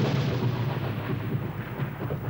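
Thunder sound effect: a loud, rolling rumble that fades slowly.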